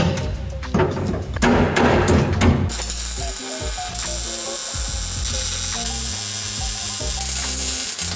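Square steel tubing knocking and clanking as it is set in place. Then, a few seconds in, a welder's arc hisses and crackles steadily for about five seconds as the tube brace is tack-welded to the car body.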